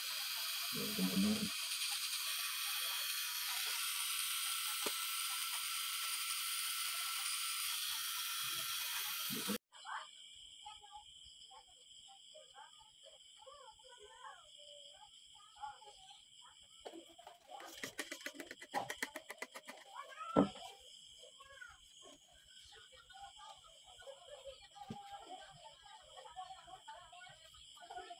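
Cartridge-style tattoo pen machine running with a steady high buzz as the needle works the skin, cutting off abruptly about ten seconds in. After it stops, faint scattered room sounds follow, with a quick run of clicks and one sharp thump near the middle.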